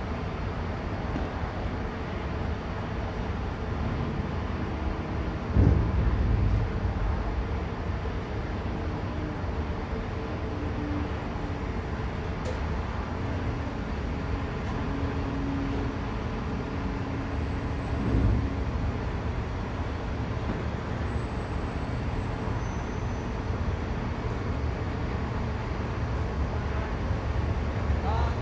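A mobile crane's engine runs steadily with a low rumble while the crane stands by for a lift. Two brief louder thumps come about six and eighteen seconds in.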